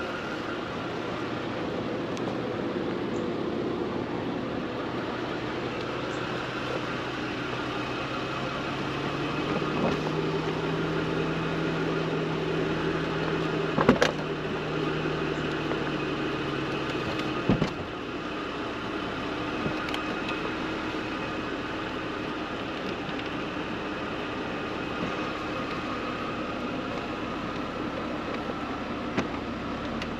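Electro-hydraulic power soft top of a 2001 Mercedes-Benz CLK320 Cabriolet retracting. A steady pump hum steps up in pitch partway through, with two sharp clunks as the top folds and the hum cuts off, then a fainter whir as the storage lid closes.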